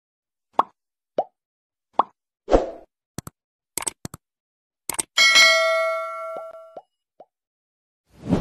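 Subscribe-button animation sound effects: four short cartoon pops, then a few quick clicks, then a bright bell ding about five seconds in that rings out for about a second and a half.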